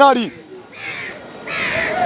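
A bird calling twice in the background, one short call about a second in and another near the end.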